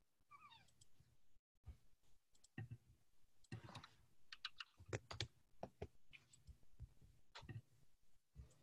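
Faint, irregular computer keyboard typing and clicks, in scattered runs through the middle and near the end. A brief falling squeak sounds near the start.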